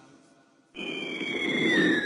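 Near silence, then about three-quarters of a second in a sudden hiss starts, carrying two high whistling tones that glide apart, one rising and one falling.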